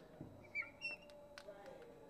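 Marker tip squeaking faintly on a glass lightboard as an equation is written, a couple of short high squeaks with a few light taps.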